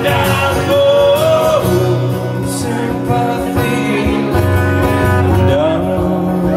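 Live band playing a pop-rock song loudly, with guitar and a lead vocal over sustained backing notes.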